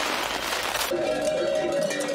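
A festival rocket goes off with a loud rushing hiss for about the first second. Then background music with plucked strings starts.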